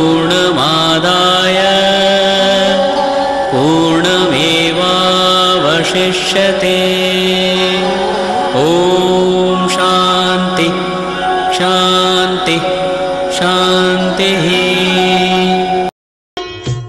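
Devotional mantra chanting with musical accompaniment: long held notes, each new phrase sliding up into its pitch every couple of seconds. It stops abruptly at the very end.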